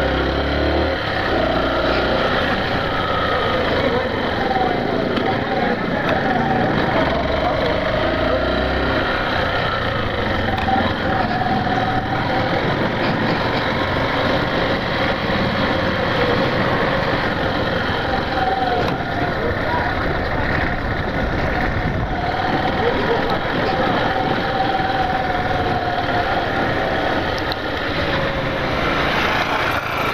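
Yamaha Factor 150's single-cylinder engine running as the motorcycle is ridden slowly, its pitch rising and falling with the throttle, under a steady rush of road and wind noise.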